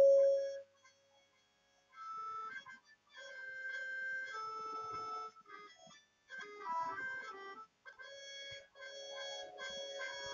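A lehra, the repeating accompaniment melody for a tabla solo, played from a phone app in a reed voice like a harmonium, fairly quiet and with short breaks. It comes in about two seconds in, after the last tabla stroke has rung out.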